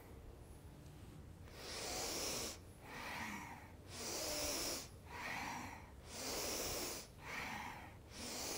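A woman's strong, audible nasal breathing: rhythmic inhales and exhales alternating about once a second, starting about a second and a half in, paced to a Kundalini spinal-flex movement.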